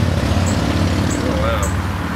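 Steady low outdoor rumble, with short high chirps repeating about twice a second and a brief voice-like sound near the end.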